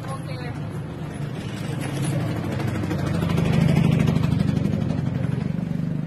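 A motor vehicle passing close by on the street: a low engine rumble that swells to its loudest about four seconds in, then fades away.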